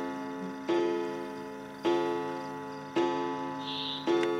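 Wall clock striking midnight: ringing chime strokes about once a second, each fading before the next.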